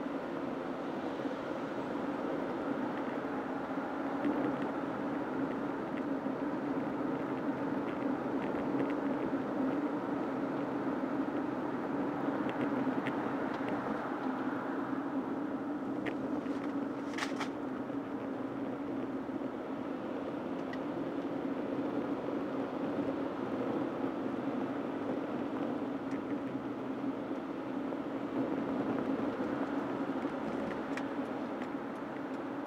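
Steady road and engine noise of a moving car heard from inside the cabin, with a low, even hum. A few short clicks come a little past halfway.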